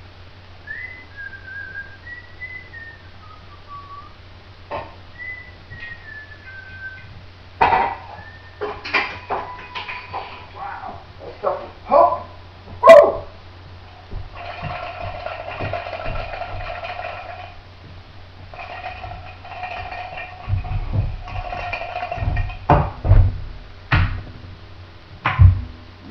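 A short tune is whistled. Then come clinks and knocks of bottles and glassware being handled, and a metal cocktail shaker shaken hard in two spells of a few seconds each, its contents rattling inside. A few dull thumps follow near the end.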